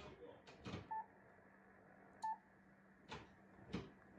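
Yaesu FT-991A transceiver giving two short key beeps a little over a second apart as its front-panel buttons are pressed, among soft clicks and taps of a finger on the panel and main dial. A faint low hum runs underneath.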